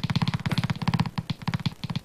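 Game-show electronic sound effect as a contestants' number board is set up: a rapid run of short blips, about fifteen a second, thinning out and becoming irregular in the second half.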